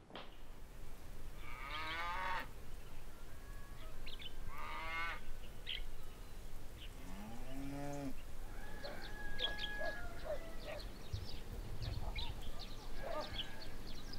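Farm animals calling: drawn-out calls about two and five seconds in, and a lower, arched call near seven seconds, followed by scattered short high chirps.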